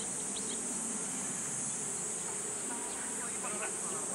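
Cicadas droning in a steady, unbroken high-pitched hiss, the summer insect chorus from the surrounding trees.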